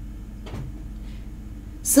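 Steady low hum of room tone with a single faint soft knock about half a second in. A woman starts to speak right at the end.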